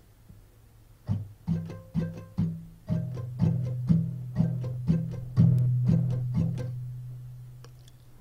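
Acoustic guitar with a capo on the fourth fret, strummed slowly on one chord in a steady pattern of about two strums a second. It starts about a second in, and the last chord rings and fades out near the end.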